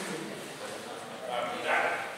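A man's voice speaking indistinctly, loudest near the end.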